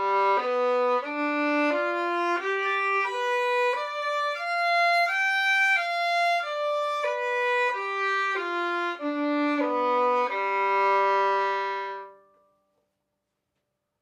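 Solo violin bowing a two-octave G dominant seventh arpeggio (the dominant seventh of C major), one note at a time at an even pace. It climbs from low G to the G two octaves up, comes back down, and ends on a longer held low G that stops near the end.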